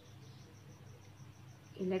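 Faint, steady high-pitched chirping of a cricket, about eight pulses a second, over a low hum; a woman's voice starts speaking near the end.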